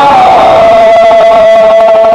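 Men chanting a Muharram mourning lament together: one long note that slides down at the start and is then held, over the noise of the crowd.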